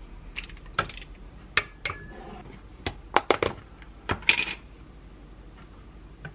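A metal lever ice-cream scoop clinking and tapping against a glass bowl and a small glass cup as Greek yogurt is scooped out and dropped in. There is a string of sharp clinks, one ringing briefly about one and a half seconds in, and a quick cluster of taps between about three and four and a half seconds.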